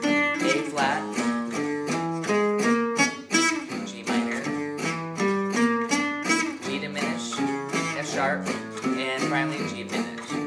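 Acoustic guitar picking a gypsy jazz arpeggio étude over a play-along backing track of rhythm guitar chords changing at a steady swing pulse.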